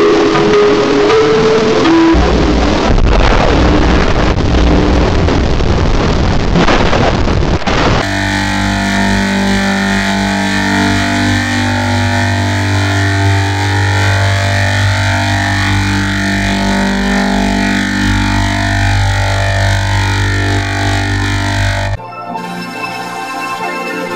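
Heavily distorted, effects-processed audio: a few held notes give way to harsh noise, then about eight seconds in it switches abruptly to a dense, warbling drone over a steady low hum.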